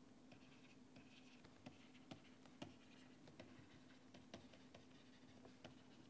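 Faint irregular taps and light scratches of a stylus writing on a tablet, over a faint steady hum.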